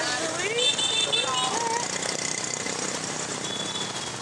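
Busy street traffic, mostly motorbikes and scooters running past as a steady noise, with voices calling over it in the first couple of seconds.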